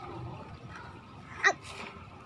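A single short, sharp vocal burst from a person about one and a half seconds in, followed by a brief hiss, over faint outdoor background.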